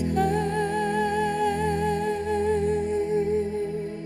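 A woman's singing voice holding one long final note with even vibrato over a sustained low accompaniment chord, the note fading near the end.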